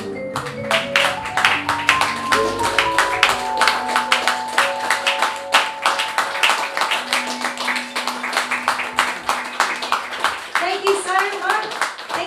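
Audience clapping at the end of a jazz song, breaking out suddenly just after the start, with a few of the band's last held notes ringing under it. A voice speaks briefly near the end.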